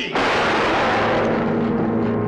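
A single pistol shot fired at the count of three, at once merging into a loud, sustained crash of a dramatic music sting with a gong-like ring that holds steady.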